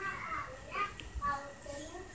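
Faint voices of children talking and playing.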